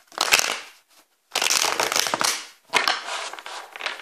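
A deck of tarot cards being shuffled by hand: three bursts of rapid card-on-card flicking, the middle one the longest and loudest.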